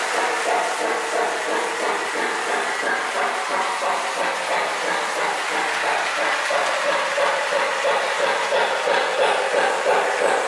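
Lionel O-gauge toy train, a steam locomotive pulling freight cars, rolling on three-rail track: a steady rolling noise with fast clicking from the wheels.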